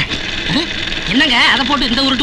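A man's voice speaking loudly in film dialogue, with a faint steady low hum underneath.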